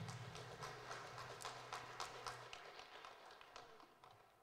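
A thump, then a faint run of light, irregular taps, about four a second, dying away toward the end, with a low hum under the first half.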